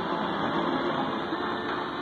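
Mediumwave AM radio tuned to 828 kHz, giving steady static and hiss with weak station audio faintly buried in it: the sound of distant stations barely coming through.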